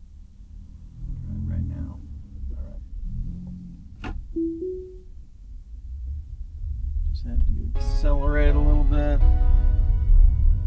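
Low rumble of a Tesla Model Y cabin on the move, with a click and a short two-note rising chime about four seconds in, the tone the car plays as Full Self-Driving engages. Background music comes in near the end and becomes the loudest sound.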